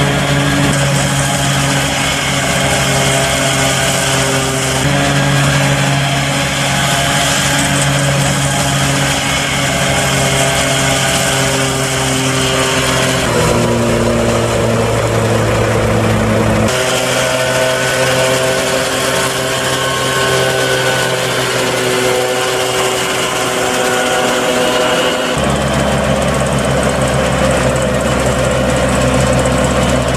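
Tractor engine running under load while driving a trailed forage chopper, with the whirr of the mower and chopper cutting and blowing the crop. The engine hum is steady but changes abruptly several times.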